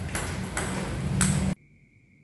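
Table tennis balls knocking sharply off a paddle and the table during serve practice, three clicks in a second and a half. The sound then cuts off suddenly, leaving only a faint steady high tone.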